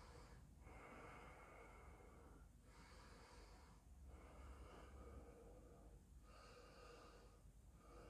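Near silence with a person's faint, slow breathing, each breath lasting one to two seconds, with short pauses between them.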